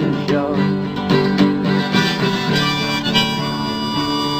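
Harmonica playing an instrumental break over acoustic guitar accompaniment, a run of short melodic notes between sung verses of a folk song.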